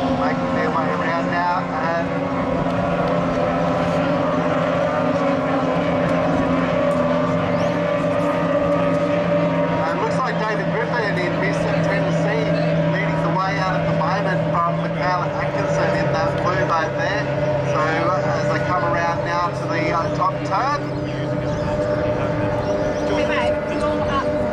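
Outboard engines of several racing powerboats running at speed, a steady drone whose low note drops about fifteen seconds in, with people talking over it.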